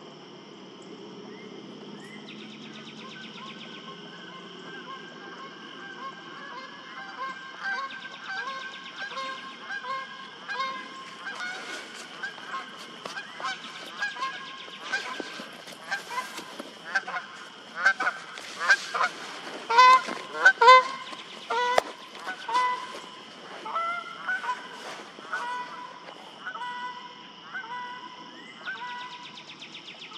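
Geese honking in a long series of short calls, building up to the loudest honks about two-thirds of the way through and then thinning out.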